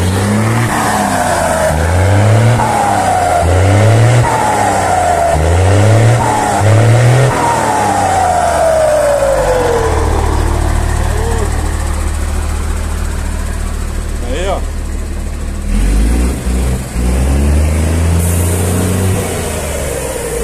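Mercedes-Benz 1620 truck's turbo diesel engine blipped about five times in quick succession, each rev followed by the turbocharger's whistle falling in pitch, then a longer whistle winding down as the engine settles to idle; one more rev comes near the end with a short hiss. The turbo whistles loudly because a comb ('pente') is fitted in it to make it sing.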